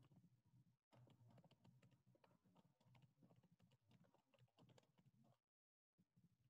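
Faint typing on a computer keyboard: a quick, irregular run of keystrokes, briefly cutting out twice, the second time near the end.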